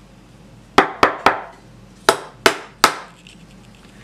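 Hard plastic Duplo-style toy lamb figures dropped onto a tabletop in a drop test, one real Duplo and one hollow knock-off. There are two runs of three sharp clacks, each clack ringing briefly.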